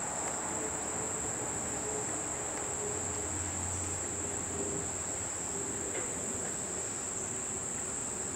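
A steady, high-pitched insect chorus, the continuous trill of crickets.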